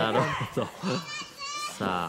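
Short, high-pitched shouts and yells, a burst about a second in and another near the end.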